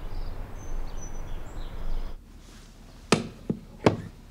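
Outdoor ambience with a few faint high chirps, then wooden xiangqi pieces set down on the board: two sharp clacks about three-quarters of a second apart, with a lighter tap between them.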